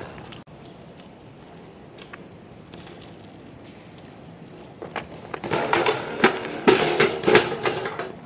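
BMX bike on concrete: faint rolling at first, then from about five seconds in a run of sharp metallic knocks, clatters and scrapes, as of the bike hitting and sliding on the pavement.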